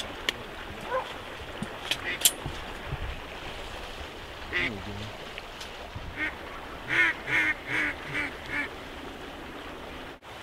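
Geese honking: a quick run of about six honks at roughly three a second in the second half, after a few faint clicks earlier on.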